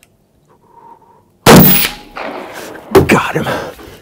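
A single gunshot about a second and a half in, sudden and very loud with a short ring-off, fired from a hunting blind; the shot heart-shoots the whitetail buck. Excited breathing and voice follow.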